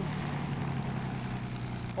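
Piston-engined propeller warbird aircraft running with a steady low engine sound.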